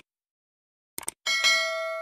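Subscribe-button animation sound effect: short clicks at the start and again about a second in, then a bright notification-bell ding that rings on and slowly fades.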